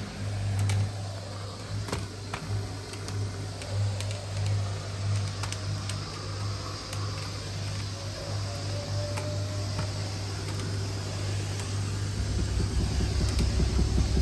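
Steam cleaner running with a steady low hum as its floor tool is pushed back and forth over tile, with a few light knocks. The hum drops lower about twelve seconds in.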